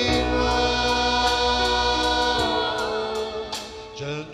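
A choir sings a hymn with instrumental accompaniment: sustained sung notes over steady low chords. Near the end a phrase closes and the sound briefly dips.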